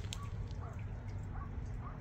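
Faint outdoor background: a steady low rumble with a few faint, short chirps spread through it, and a single sharp click near the start.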